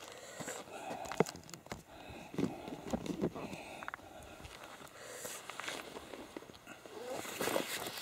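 Handling noise: rustling and scattered light knocks as clothing brushes close to the microphone and a soft bag is taken up.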